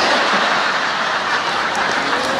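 A large audience laughing together in response to a joke, a dense, steady wash of crowd noise.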